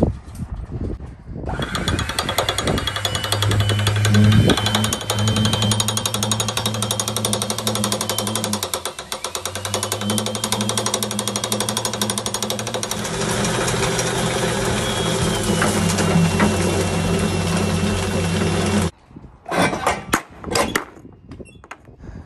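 Canister vacuum cleaner switched on about a second and a half in, its high whine rising as it spins up, then running steadily with a low hum and hiss; the hum dips briefly midway. It is switched off suddenly near the end, followed by a few knocks.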